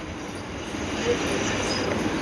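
A steady rushing noise with no clear pitch, slowly growing louder.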